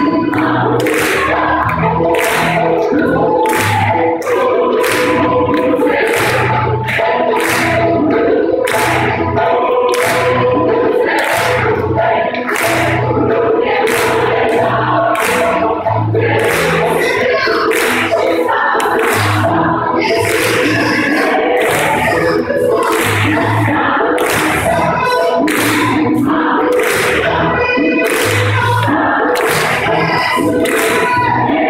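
Large gospel choir singing an upbeat song, with steady hand claps on the beat and a low bass line underneath.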